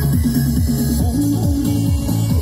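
Loud electronic dance music from a speaker-stacked sound-system car, with a deep, repeating bass line of notes sliding downward.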